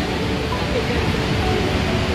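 Steady outdoor background noise with a heavy low rumble, and faint distant voices.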